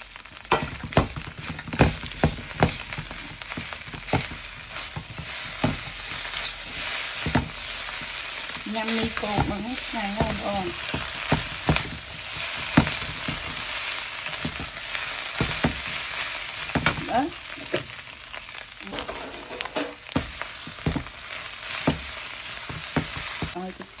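Egg noodles and scrambled egg sizzling in a hot non-stick pan as they are stir-fried and tossed with chopsticks, a steady hiss broken by many sharp clicks of the chopsticks against the pan.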